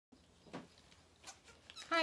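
Quiet room with a brief faint knock or rustle about a quarter of the way in and a few small ticks. A woman starts speaking at the very end.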